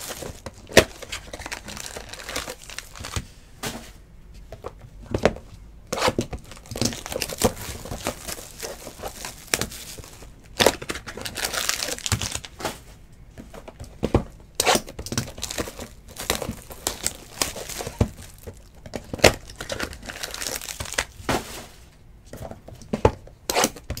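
Plastic shrink wrap and foil trading-card packs crinkling and tearing as they are handled and pulled open by hand, with many irregular sharp crackles.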